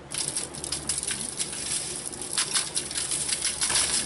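Sheet of aluminium foil crinkling and crackling as it is folded over and crimped shut by hand, in uneven surges.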